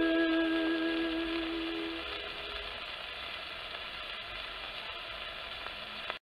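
The final held note of a 78 rpm shellac record fades out about two seconds in. After that only the record's steady surface hiss and crackle is left, slowly dying away before the audio stops abruptly.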